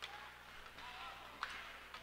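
Faint hockey-rink ambience under a low steady hum, with a few faint distant voices and one sharp click about one and a half seconds in.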